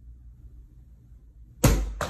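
A low steady hum, then about one and a half seconds in a sudden, loud rush of noise that carries on.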